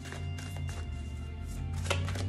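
A deck of tarot cards being shuffled by hand, cards clicking and slapping against each other, with a sharper snap near the end. Soft background music with a low bass line plays underneath.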